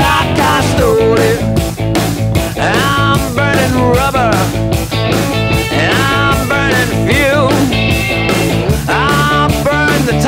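Rockabilly band playing an instrumental break: a lead electric guitar plays a solo full of string bends and vibrato over bass and drums keeping a steady beat.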